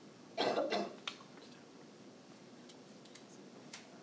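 A person coughing, two quick coughs close together about half a second in, followed by a sharp click and a few faint ticks over quiet room tone.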